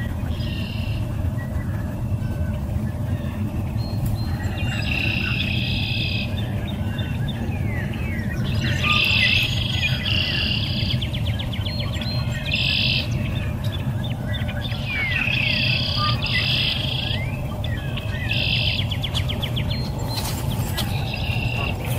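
Small songbirds singing in repeated bursts of high chirps and trills every few seconds, some notes sweeping up or down, over a steady low background rumble.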